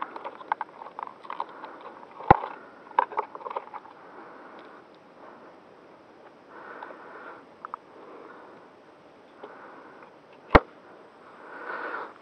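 Hands unplugging a battery connector and pulling the battery out of an electric RC plane's nose hatch: small clicks and rustles, with two sharp knocks, one about two seconds in and another near the end.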